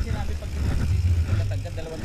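Uneven low rumble of wind buffeting an action camera's microphone, with faint voices talking near the end.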